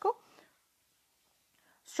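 A woman's spoken word trails off, then near silence (room tone), and a faint intake of breath just before she speaks again.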